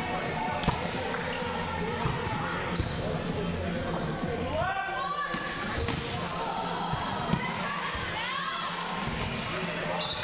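Volleyball hit by hand during a serve and rally in a large hall: sharp hits, the loudest about a second in and a few more later. Shoes squeak on the court floor around the middle and near the end, with players' voices throughout.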